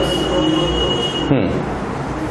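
Whiteboard marker squeaking on the board in one high, steady squeal lasting just over a second while a question mark is written, followed by a short falling-pitched sound.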